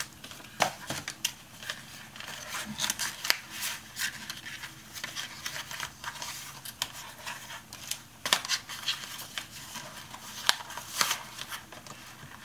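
Paper notebooks being handled and slid in and out of a traveler's notebook cover: papery rustling and scraping with scattered light taps and clicks.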